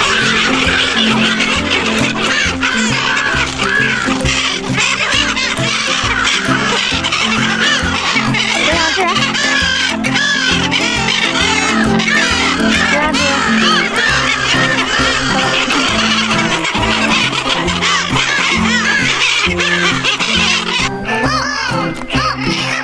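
A flock of brown-headed gulls calling over one another, many short rising-and-falling squeals, with background music playing underneath. The gull calls thin out near the end.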